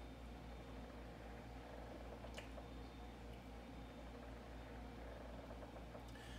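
Quiet room tone with a steady low hum, and one faint tick about two and a half seconds in.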